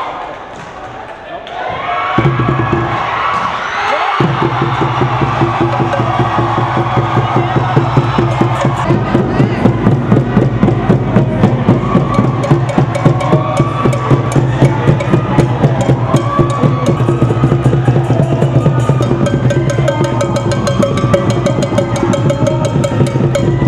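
A crowd claps and cheers for the first couple of seconds, then music with a fast, steady percussion beat starts and carries on.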